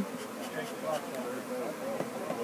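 Honey bees from a swarm buzzing around close by, a steady hum with faint voices underneath.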